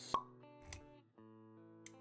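Intro music of held notes, cut by a sharp pop sound effect just after the start and a softer low thump a little later.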